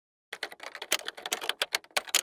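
Typewriter sound effect: a rapid run of sharp key strikes, about ten a second, starting a moment in.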